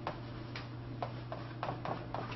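Chalk tapping and clicking on a blackboard as an equation is written, about six sharp, irregular taps.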